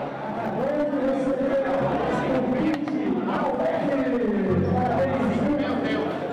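Spectators talking and chattering in a crowded hall, with one man's voice standing out.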